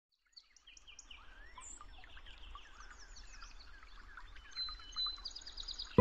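Several songbirds chirping and singing at once over a faint low rumble, fading in from silence and growing louder, with a rapid high trill near the end.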